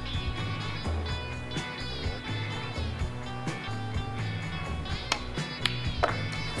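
Instrumental background music with sustained notes over a changing bass line, with two sharp clicks near the end.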